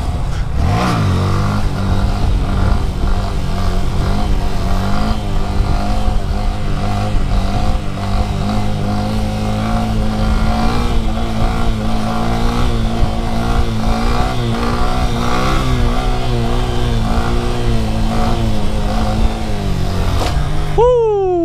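2018 Honda Grom's 125cc single-cylinder four-stroke engine revved up about a second in, then held at steady high revs through a long wheelie, with the pitch edging up midway. The revs drop off just before the end as the front wheel comes down. Wind noise on the helmet-cam microphone runs throughout.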